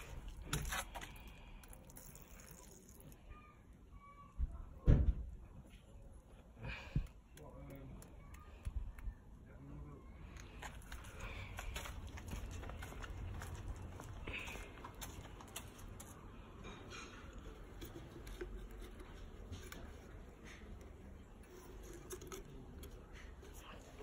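Hands handling small objects: a few knocks and taps, the loudest about five seconds in, then a low steady rustle, as a small plastic water dish is handled and set into a glass enclosure.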